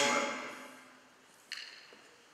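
A pause in a man's speech through a microphone in a large room: his last word fades out in the room's echo, there is one short sharp sound about one and a half seconds in, and otherwise only quiet room tone.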